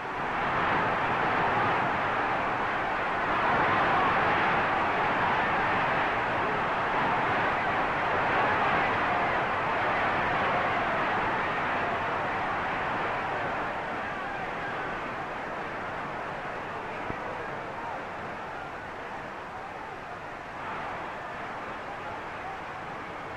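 Large boxing crowd in an open-air stadium cheering and yelling together. The noise swells about a second in and slowly dies down over the second half.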